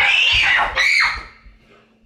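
A child screaming loudly in fright at being jumped out at: two high-pitched screams within the first second, then the sound stops.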